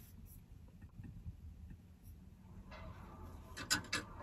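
Quiet car-cabin room tone with faint handling noise: light taps and rubbing, and a couple of sharp clicks near the end.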